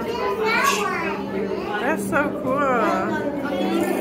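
Children's voices talking and calling out amid crowd chatter, with a steady low hum underneath.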